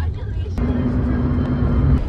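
Car engine and road noise: a steady low drone with a single held hum. It starts abruptly about half a second in, after a brief faint voice.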